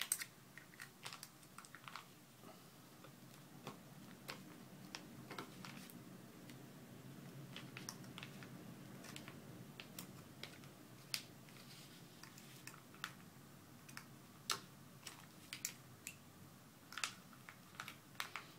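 Small, irregular clicks and taps of a metal spudger prying around the edge of an iPod Touch, working its glass digitizer loose from its clips, over a faint low hum.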